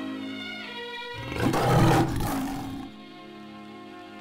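A big cat's roar of nearly two seconds, starting about a second in, loud over music with long held notes.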